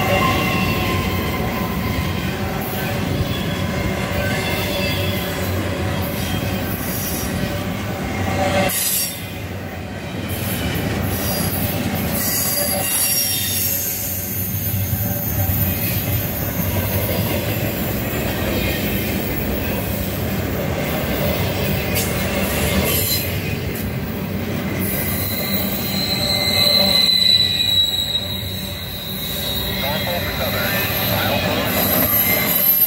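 Double-stack intermodal freight train's well cars rolling past, a steady rumble of steel wheels on rail with high-pitched wheel squeal. The squeal is strongest in the last few seconds.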